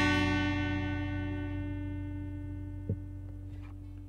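The final strummed chord of the acoustic guitars ringing out and slowly fading away at the end of the song. A single light tap comes about three seconds in.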